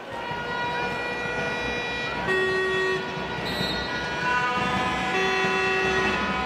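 Several horns blown in a handball crowd: long held notes overlapping in a chord, switching to new notes about two seconds in and again about five seconds in, over general crowd noise.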